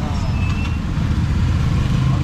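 Auto rickshaw's small engine running steadily, heard from the open passenger seat in traffic.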